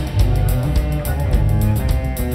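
Large Arabic–Western fusion ensemble playing an instrumental piece: plucked strings such as oud and guitars, with bowed strings and double bass over a steady percussion beat.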